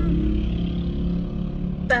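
Steady low rumble and hum of a car cabin, with a voice starting right at the end.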